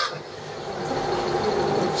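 Steady room noise with a faint constant hum, dipping just after the start and slowly swelling again.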